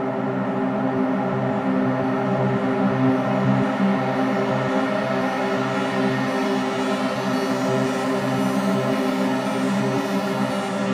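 Arturia MicroFreak synthesizer playing back its real-time render of a sequenced MIDI line: a dense, steady electronic texture of held tones over a low line that steps from note to note.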